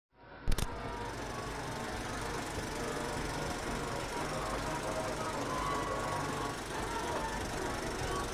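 Film projector running: a sharp click about half a second in as it starts, then a steady mechanical rattle and hiss.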